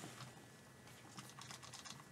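Near silence with a run of faint, quick clicks and taps from handling at a desk.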